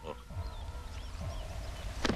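Faint bird chirps in the background ambience: a few short rising-and-falling whistles over a low rumble.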